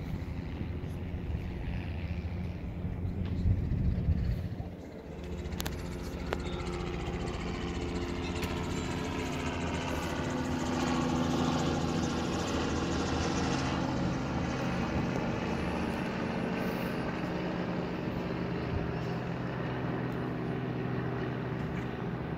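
Single-engine banner-tow plane flying over the water, a steady engine-and-propeller drone. The drone swells a little in the middle and carries a slowly shifting, phasing tone as the plane comes closer.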